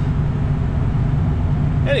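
Steady low drone inside the cab of a 2004 Ford F-350 with its 6.0 turbo diesel cruising at highway speed: engine, road and tyre noise.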